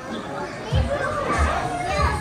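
Shoppers' chatter with a child's voice, over background pop music whose bass beat comes in just under a second in.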